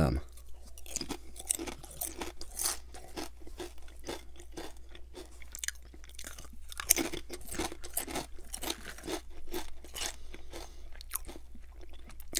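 Potato chips being bitten and chewed: a run of irregular, crisp crunches.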